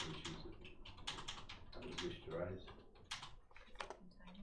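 Typing on a computer keyboard: a quick run of key clicks, with low murmured voices underneath.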